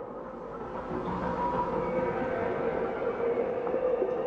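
Fade-in of a rock song's opening: a steady, rumbling drone with a held tone, slowly swelling in volume ahead of the band's entry.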